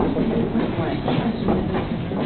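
Indistinct voices in a busy room, with irregular clicks and knocks running through them.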